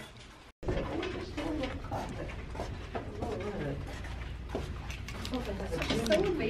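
Indistinct voices talking over a steady low rumble, with a brief cut to silence about half a second in.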